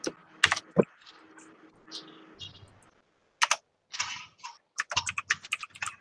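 Computer keyboard typing over an open microphone on a video call: scattered clicks, sparse at first and coming thick and fast near the end.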